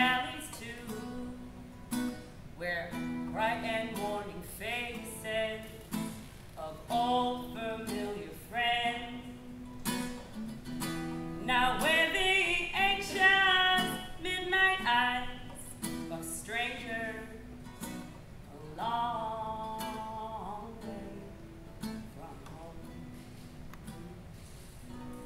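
A woman singing to her own acoustic guitar. The voice stops about three seconds before the end, and the guitar plays on alone.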